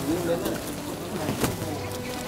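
Faint background voices over steady outdoor noise, with a single sharp knock about one and a half seconds in.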